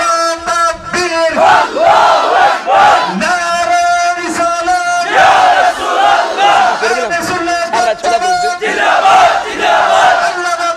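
A crowd of men chanting zikr together in loud shouts, with several long held notes between shorter rising and falling calls.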